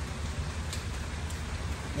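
Rain falling steadily, heard as an even hiss with a low rumble beneath it, and two faint clicks in the middle.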